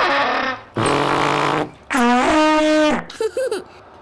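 A tuba played in three blasts: two raspy, spluttering ones, then a longer held note. It is a faulty tuba making a funny sound, one that needs fixing at the music shop.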